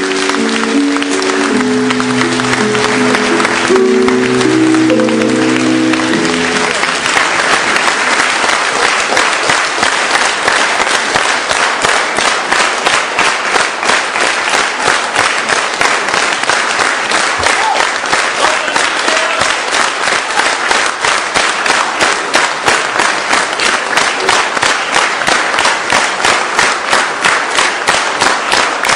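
Theatre audience applauding, with a short recorded melody playing over the applause for the first six seconds or so; after that the clapping falls into a steady, even rhythm, the whole audience clapping in unison.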